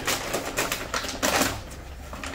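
Plastic dog-food bag crinkling and rustling in quick, irregular crackles as it is handled and opened, loudest about halfway through.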